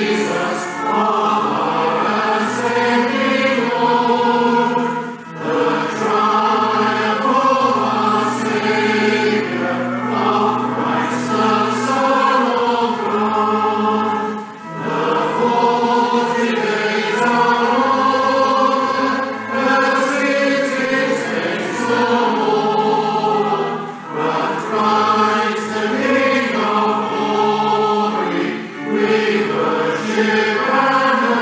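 A church congregation singing a hymn together, with held notes and short breaks between lines.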